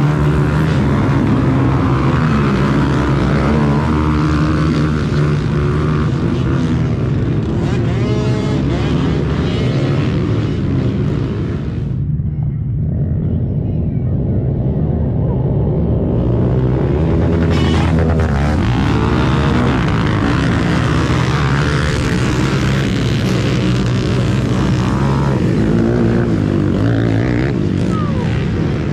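Several small ATV engines running and revving together, their pitches rising and falling over one another. About halfway through, the sound turns duller for a few seconds.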